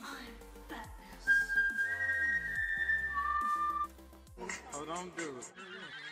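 A few long, steady whistled notes, two of them overlapping, over background music. A voice follows near the end.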